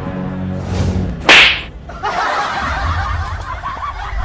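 A short, sharp whip-crack sound effect about a second in, the loudest sound here, over a steady background sound.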